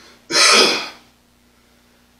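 A man clearing his throat once: a single short, harsh burst under a second long.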